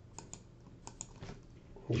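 Computer keyboard keys clicking: about five separate, quick keystrokes.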